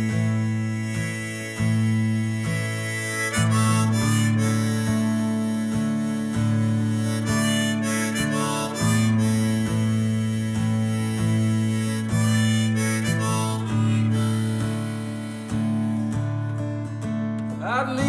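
Harmonica on a neck rack playing over a strummed acoustic guitar, a fresh strum about every second: the instrumental intro of a folk song.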